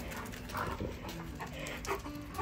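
Alaskan Malamute vocalizing during play, a few short high calls: one about half a second in, then a couple more near the end.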